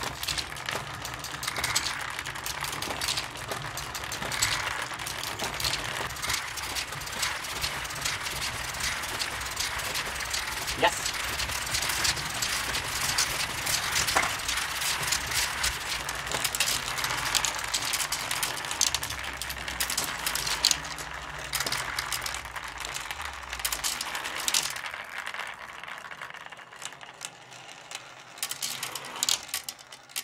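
Steel marbles clattering as they run through the Marble Machine X's new marble divider while it fills on its first test, a dense rattle of many small clicks over a low mechanical hum from the cranked machine. The hum stops about four-fifths of the way through, and the clicking thins out after that.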